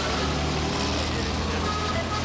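Steady low rumble of street noise with indistinct voices.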